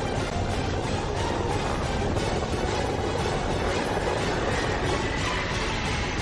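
Music from a TV news intro, overlaid with a dense, steady rumbling noise effect.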